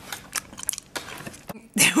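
Light, irregular clicks and taps of eating at a table, then a laugh breaks out near the end.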